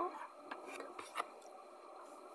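Faint handling sounds in a small room: soft rustling and a few light clicks as a cat is lowered from being held up onto a lap.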